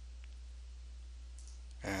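Steady low electrical hum on the recording, with a faint single click about a quarter second in.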